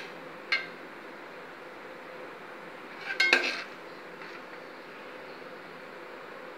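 Long steel spoon clinking against a metal cooking pot of water as it is stirred: one short clink about half a second in, then a louder cluster of knocks around three seconds in, over a steady low background noise.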